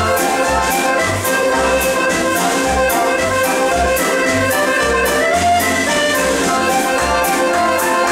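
A Scottish country dance band playing live, with a steady bouncing bass beat of about two beats a second.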